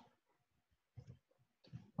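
Near silence, with a couple of faint short clicks about a second in.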